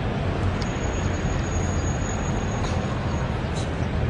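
Steady city traffic noise, a continuous low rumble with hiss. A faint, thin, high steady tone comes in shortly after the start and stops about three-quarters of the way through.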